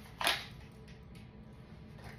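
A Glock 23 pistol drawn from its holster: one sharp clack about a quarter second in, then a faint click about a second in.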